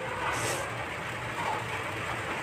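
A short, soft rustle of loose rice grains being brushed by hand across a surface about half a second in, over a steady background noise.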